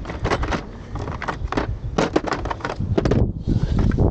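Metal sockets and hand tools clinking and rattling in a plastic socket-set case as a hand rummages through it: a quick, irregular run of small clicks and knocks.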